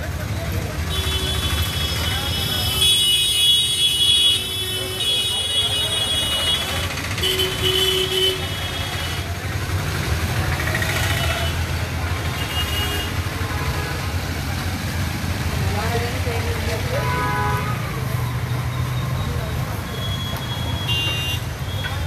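Busy street traffic: motor vehicle engines running steadily, with repeated horn toots, most of them in the first eight seconds, and people talking in the background.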